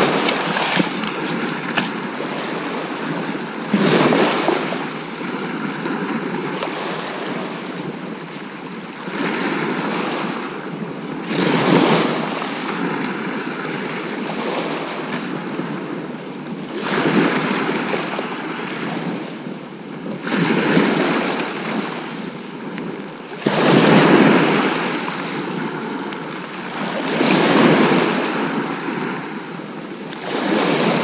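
Sea waves breaking and washing on the beach at the water's edge, one surge every three to four seconds over a steady wash.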